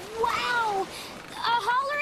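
Short wordless vocal sounds from a young female cartoon voice, two brief calls gliding up and down in pitch, the second in quick broken pieces near the end.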